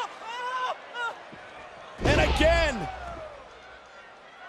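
A wrestler slammed onto a wrestling ring mat about halfway through: one sudden heavy impact with a short low rumble after it. A man's exclamation rides over the impact, and brief vocal sounds come before it.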